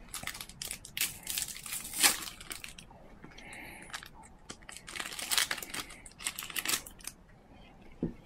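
Foil wrapper of a Match Attax trading-card pack being torn open and crinkled in the hands. It comes in two spells of crackling with a short lull between.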